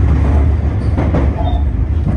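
Tobu 50000 series electric train running along the track, heard from inside the driver's cab: a steady low rumble of running noise.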